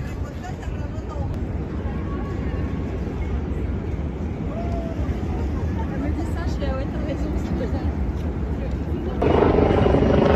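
Steady low outdoor rumble with faint, scattered voices of people nearby. About nine seconds in it turns suddenly louder and busier.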